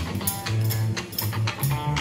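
A song with a bass line and a steady drum beat playing from a JBL Link 20 portable smart speaker.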